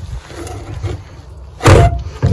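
Outboard remote control box shift lever being moved out of reverse back to neutral: a low rumble of handling, then a loud clunk near the end as the lever drops into its detent.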